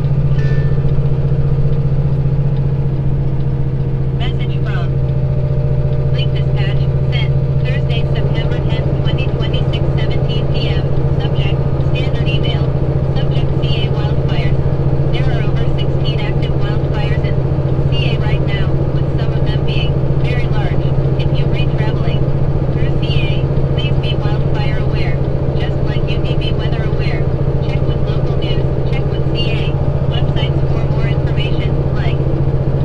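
Heavily loaded semi truck's diesel engine droning steadily under load inside the cab while climbing a long grade. From about four seconds in, short high-pitched chirps and clicks come and go over the drone.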